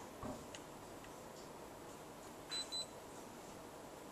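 Two short, high electronic beeps in quick succession, the focus-confirmation beep of a digital camera, after a soft knock near the start.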